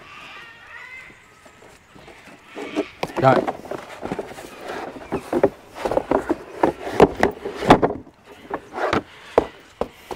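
MAXTRAX Xtreme nylon recovery boards being handled in their cardboard box and pulled out: a quiet start, then from about three seconds in a busy run of knocks, scrapes and rattles of hard plastic against plastic and cardboard.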